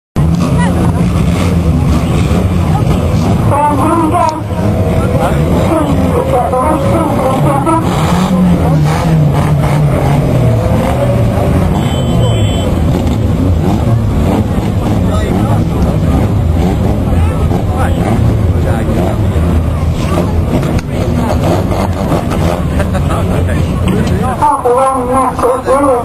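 Several banger racing cars' engines running and revving together as they race round the track, a dense steady drone whose pitch rises and falls.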